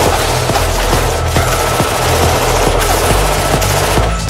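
Hard techno: a pulsing bass line under a dense layer of rapid machine-gun fire sampled into the track.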